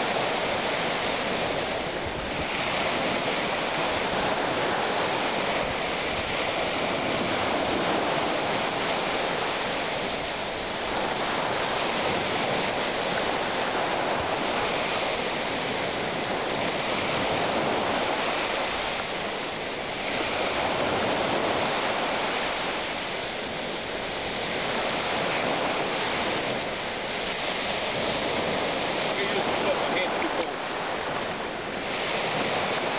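Small lake waves breaking and washing on a gravel beach: a steady rush that swells and eases every few seconds.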